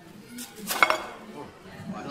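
Metal dishware clinking: a quick cluster of bright clinks with a short ring just before the middle, over murmuring voices.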